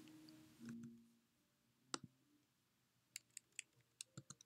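Near silence broken by a few faint computer clicks: a single click about two seconds in and a quick run of about four clicks near the end.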